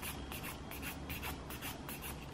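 Handheld nail file scraping back and forth across acrylic fingernails in quick, repeated strokes, filing the top coat off before an acetone soak-off.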